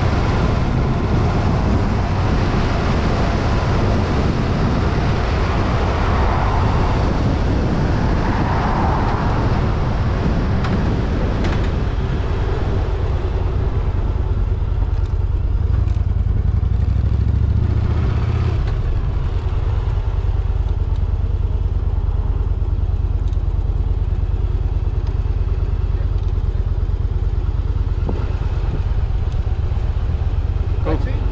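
Yamaha V Star 1100's air-cooled V-twin engine running while the motorcycle is ridden, with a rush of wind and road noise over the first half. The wind noise dies away after about eighteen seconds, leaving a steady low engine note as the bike slows.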